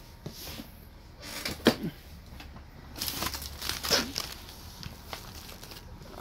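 Paper mailers and cardboard shipping boxes being handled over a plastic mail tray: crinkling rustles, with a sharp knock nearly two seconds in and a longer rustle in the middle.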